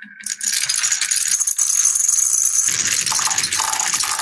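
Many small balls rolling together down a wavy wooden marble-run slope, making a loud, continuous clattering rattle. A deeper rumble joins in about two-thirds of the way through.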